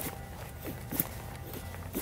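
Knife blade shaving curls down an upright stick of split dry wood to make a feather stick: about four short scraping strokes, spaced roughly half a second to a second apart.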